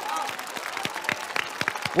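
Studio audience applauding, a dense run of claps.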